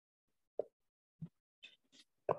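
Two short soft taps, about half a second apart, then a brief breathy hiss near the end, with near silence between.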